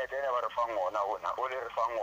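Speech only: a person talking steadily, the voice thin and narrow as over a telephone line.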